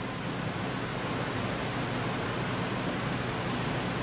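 Steady background hiss of room and recording noise, even throughout, with no distinct sound events.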